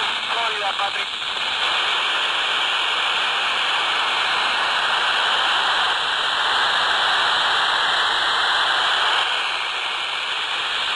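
Handheld Baofeng BF-F8+ radio's speaker tuned to the SO-50 satellite downlink: a faint, broken voice comes through the noise in the first second, then steady loud FM static hiss. This is the sign of a weak signal from a low satellite pass received on the stock antenna.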